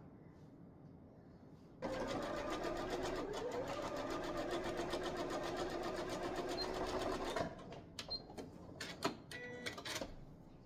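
Janome computerized sewing machine stitching a fabric strip: the motor and needle run steadily for about five and a half seconds, then stop. A few separate clicks follow near the end.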